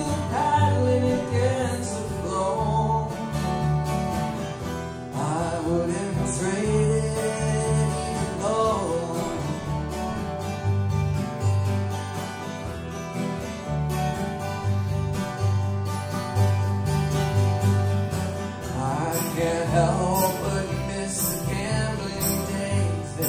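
Live acoustic folk band playing an instrumental passage: acoustic guitars and a plucked upright bass keeping a steady beat, with a bending lead melody rising above them at intervals.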